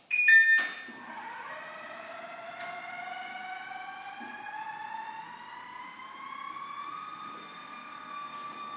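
Flow 2 curved stairlift setting off: a short tone and a click, then the drive motor's whine rising steadily in pitch over about six seconds as the lift gathers speed up the rail, levelling off near the end.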